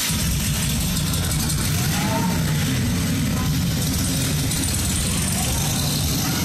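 Steady low mechanical rumble of a KMG Afterburner pendulum ride running, with no music over it.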